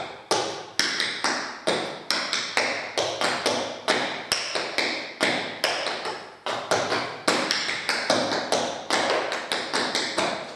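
Metal taps on tap shoes striking a hard tiled floor in a quick, rhythmic run of crisp clicks. These are the drops, shuffles and ball changes of a syncopated Suzie Q tap sequence, at about three to five taps a second.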